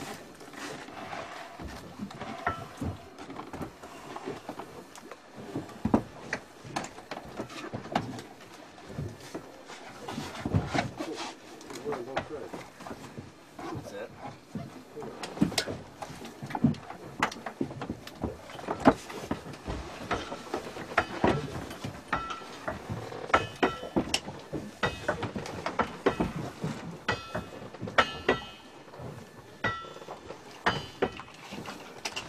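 Indistinct voices, with frequent irregular knocks and clatter of scuba gear, tanks and fittings, being handled on a dive boat's deck.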